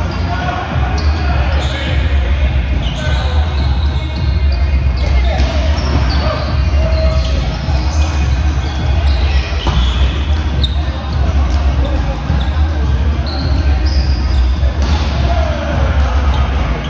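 Indoor volleyball rally in an echoing gym: a ball being hit and bouncing, with players' shouts and voices. A strong steady low hum runs underneath.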